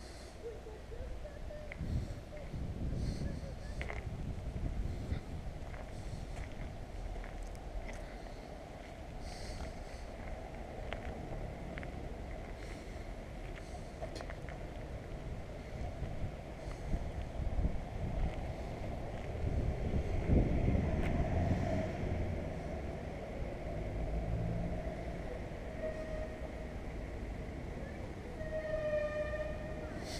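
Outdoor street ambience: a steady low rumble of distant road traffic, with a brief pitched tone near the end.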